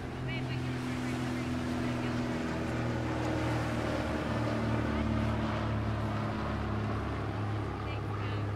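A motorboat engine drones steadily, its pitch shifting slightly a couple of times. It grows a little louder toward the middle, as if the boat is passing.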